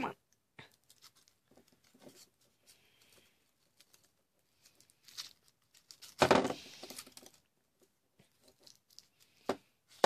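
Foil wrapper of a Cadbury Creme Egg being worked open by hand: quiet crinkling and rustling, then a loud tearing rip about six seconds in that lasts about a second.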